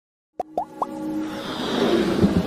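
Logo-intro sound effects: three quick rising plops about half a second in, then a swelling whoosh that builds over a music bed.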